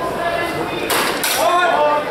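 Steel longswords clashing in a short burst about a second in, followed at once by a loud voice calling out.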